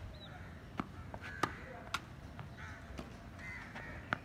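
Tennis rally: sharp pops of racket strikes and ball bounces, the loudest about a second and a half in and another just before two seconds. Crows caw several times in the background.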